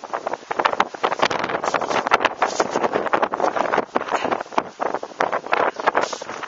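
Snow shovel scraping and crunching through snow in a dense, irregular run of strokes, with wind buffeting the microphone.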